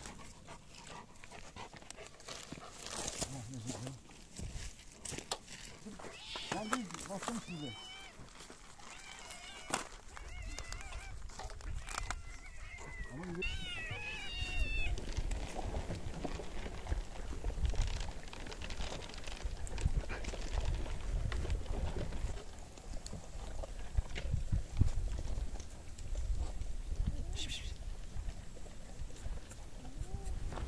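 Stray cats and dogs crowding around food being handed out, with a few short meows around the middle of the stretch. A low rumble comes in from about ten seconds on.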